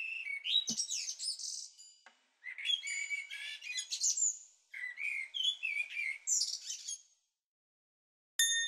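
A small songbird chirping and twittering in three bursts of quick, high notes, falling silent about seven seconds in.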